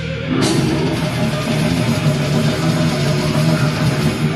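Death metal band playing live: heavily distorted electric guitar over a drum kit, loud throughout. The cymbals drop out briefly at the very start and the full band crashes back in about half a second in.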